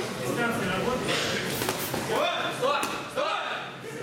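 Coaches and spectators shouting during an amateur boxing bout, with a few sharp thuds of gloved punches landing around the middle.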